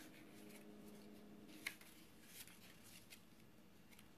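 Near silence: quiet room tone with a faint low hum in the first half and a few faint ticks.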